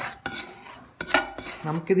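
A spatula scraping and tapping against a pan as roasted ground spices are scraped out into a bowl, with a few sharp clicks near the start and again a little after a second in.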